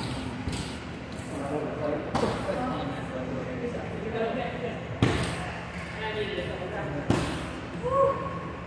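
Three heavy thuds of strikes landing on a hanging heavy bag, a couple of seconds apart, each echoing briefly in a large room.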